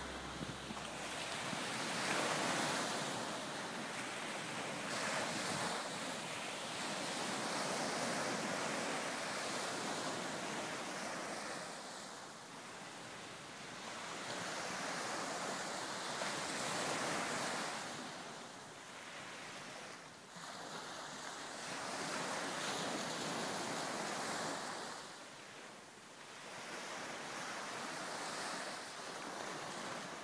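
Ocean surf: a rushing wash of waves that swells and falls every few seconds, taking over as the last of the music dies away at the very start.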